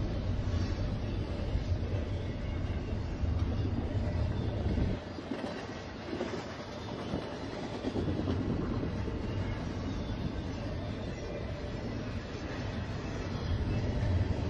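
Double-stack intermodal container train's well cars rolling past, steel wheels on rail with a clickety-clack. The low rumble drops away about five seconds in and builds back up near the end.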